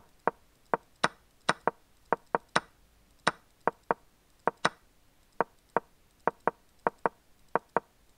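Chess.com's wooden move sounds, a short knock for each move, as a game replay is stepped through one move at a time. About twenty knocks come at irregular spacing, two or three a second, some of them sharper and brighter than the rest.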